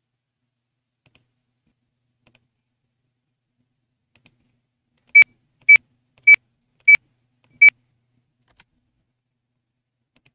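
DesignShop's digitizing sound: a short computer beep at each click as digitizing points are placed. There are five beeps, all on the same high pitch, about half a second apart, about five seconds in. Faint mouse clicks come between them.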